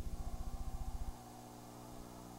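Electrical hum on an old videotape's audio track: a rapid pulsing buzz that stops about a second in, leaving a steady, fainter hum.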